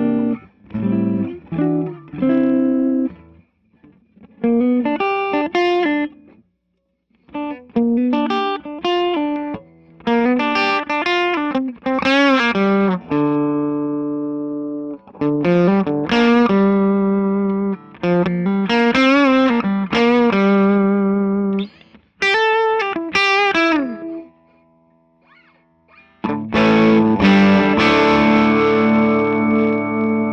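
Electric guitar played through a Fender 6G6-B Blonde Bassman-copy tube amp head fitted with new-old-stock tubes, with a slightly driven tone. Phrases of single notes with string bends, broken by short pauses, end on a chord left ringing for the last few seconds.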